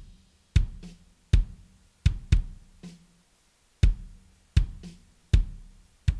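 Soloed kick drum track, recorded with a Shure Beta 91 inside the drum and an Audix D6, playing about seven deep kick hits in a drum groove. The rest of the kit is faintly audible as spill between the kicks.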